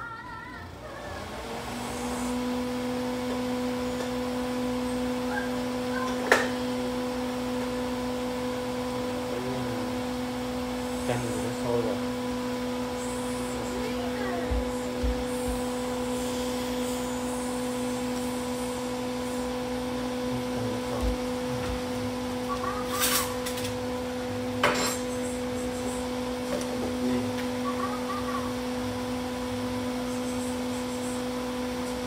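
Kitchen range hood fan switched on about a second in, then running steadily with a motor hum. A few sharp clicks and knocks of cookware sound over it, the loudest about six seconds in.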